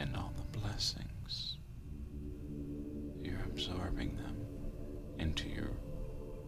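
Soft, whispered speech over quiet ambient music with sustained drone tones.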